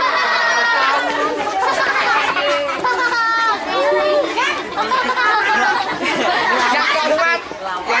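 A crowd of children's voices chattering and talking over one another, with no single speaker standing out.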